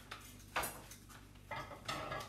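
A few light clinks and knocks of kitchenware being handled on a countertop, the clearest about half a second in and near the end.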